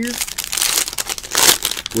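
A trading-card pack wrapper crinkling and tearing as it is opened by hand. There are two louder rips, about half a second in and near a second and a half.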